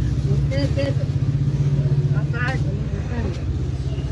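An engine running steadily nearby, a low, even hum with a fast regular pulse, under scattered voices of people gathered around.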